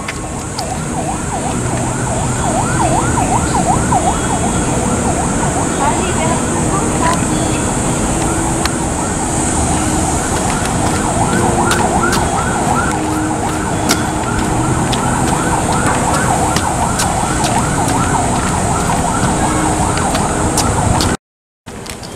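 A siren sweeping quickly up and down in a repeating yelp over a steady high buzz and low street hum. The sound cuts out briefly near the end.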